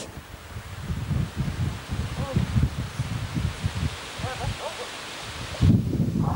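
Wind noise rumbling irregularly on a camcorder microphone, with rustling foliage and a steady hiss. The sound cuts off suddenly near the end into louder rumbling.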